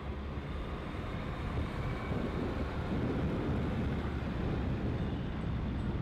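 Diesel engine of a John Deere 644G wheel loader running steadily as the machine drives across the dirt carrying a full bucket of sand, a continuous low engine noise that grows a little louder mid-way.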